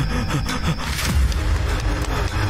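Footsteps slapping the ground, a scraping sound with each step, over low, sustained background music.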